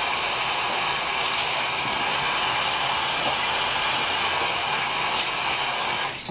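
Hand-held hair dryer blowing steadily, a loud even rushing noise.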